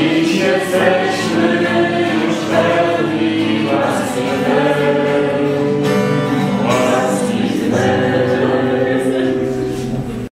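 A group of people singing a Polish Marian hymn together, with an acoustic guitar strummed along.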